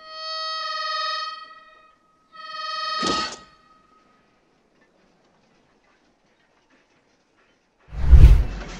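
A harmonica held in a dying man's mouth sounds two long notes on the same pitch, blown by his last breaths, the first about two seconds long and the second shorter, ending in a sharp noisy burst. A heavy low thump begins right at the end.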